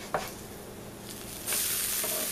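A spiral-cut potato hash brown is flipped onto a hot, buttered and oiled electric griddle. After a short knock near the start, a loud sizzle of frying begins suddenly about a second and a half in.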